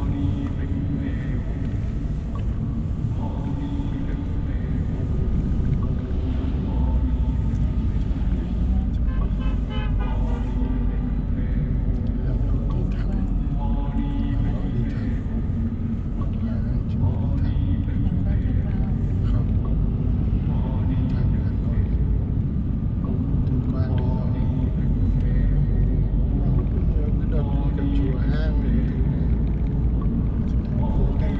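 Steady low road and engine rumble inside a moving Mercedes-Benz car's cabin, with voices talking at intervals over it.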